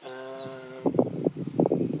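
Speech only: a man's long, held hesitation sound, "uhhh", while he searches for the next word, then a few halting, mumbled words.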